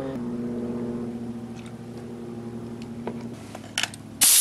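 Steady low machine hum, which stops about three seconds in, followed by a couple of faint clicks.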